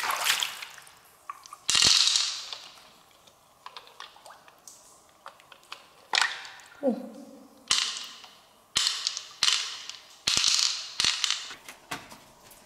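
A series of sharp wet splashes and slaps from hands rinsing and handling freshwater pearl mussels and pearls in water, about seven in all. There is a brief falling tone about seven seconds in.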